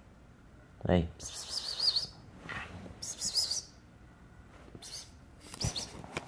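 High-pitched warbling chirps in several short bursts, the longest two near the start and the middle.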